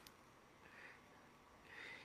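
Near silence: room tone over the call, with two faint breaths about a second apart.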